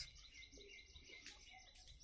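Faint bird chirping in the background, a quick series of small high chirps, otherwise near silence.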